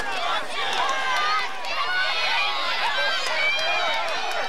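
Football spectators shouting and cheering during a running play: many high, overlapping voices yelling at once, with no single voice standing out.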